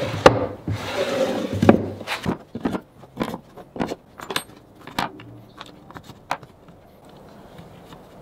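A wooden plywood drawer sliding shut with a rubbing scrape, then a scattered run of sharp clicks and knocks as steel Forstner bits are set one by one into drilled holes in a plywood holder.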